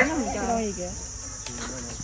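Steady high-pitched drone of insects, with faint voices in the background.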